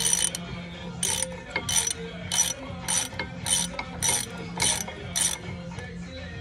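Ratchet wrench clicking in nine quick runs, one about every half second, as it is swung back and forth to turn a bolt on a car's front brake assembly.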